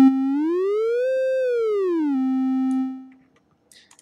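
Synthesized tone from the Ableton Learning Music 'Explore pitch' drag field, played by dragging toward the high-pitch side and back. It glides up about an octave, holds briefly, glides back down to the starting note, holds, then fades out about three seconds in.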